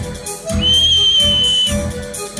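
A single high, steady whistle held for about a second over music with a beat.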